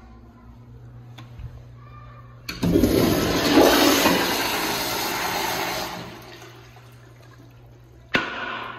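A wall-hung American Standard Afwall toilet flushing on its flushometer valve. The valve opens with a sharp onset about two and a half seconds in, followed by a loud rush of water through the bowl that tapers off over the next few seconds.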